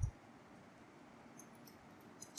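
Very quiet room tone with a brief low thump at the start, then a few faint clicks about one and a half seconds in from typing on a computer keyboard.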